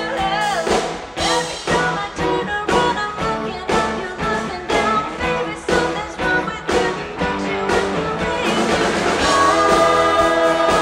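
Live rock band playing: drum kit keeping a steady beat of about two strokes a second under electric bass, guitars and pedal steel guitar, swelling slightly louder near the end.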